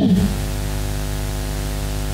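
Steady electrical buzz and hiss from the sound system's feed: a mains hum with many evenly spaced overtones, unchanging throughout.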